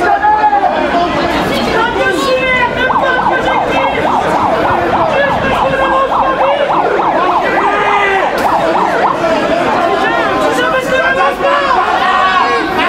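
A siren sounding a fast rising-and-falling warble for a few seconds, starting about three seconds in, over the chatter of a street crowd.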